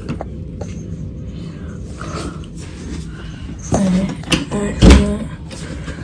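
Handling noise from a phone held in the hand while she moves: a steady low rubbing rumble, a brief murmur of voice near the middle, and one sharp knock about five seconds in.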